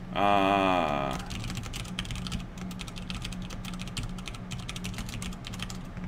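Rapid typing on a computer keyboard: a dense, continuous run of key clicks lasting several seconds, over a low steady hum.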